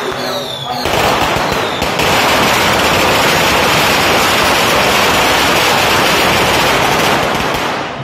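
A long string of firecrackers going off: a few separate bangs about a second in, then a dense, rapid crackle that cuts off near the end.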